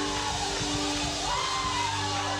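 Live church music: a steady held chord with voices sliding up and down above it.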